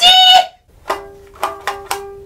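A brief loud pitched vocal sound, then a small toy ukulele plucked four times, its notes ringing on.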